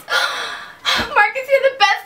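A person's loud, breathy gasp, then a few short voiced sounds like brief speech.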